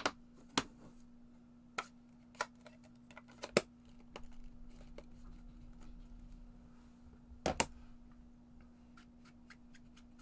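Clear acrylic stamp block tapping against an ink pad and paper and being set down on a craft mat: a handful of separate sharp taps, the loudest about three and a half seconds in and a quick double tap about seven and a half seconds in.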